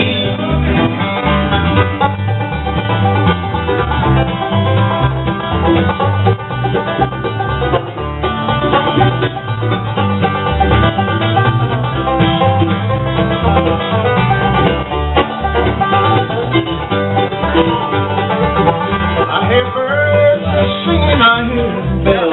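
A live bluegrass band playing an instrumental break with banjo, mandolin and upright bass, with no singing.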